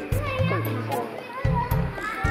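Light-hearted background music with percussion and steady low bass notes, with children's voices chattering over it.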